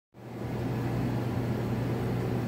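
Steady low electrical hum with an even hiss over it, from the aquarium's running equipment.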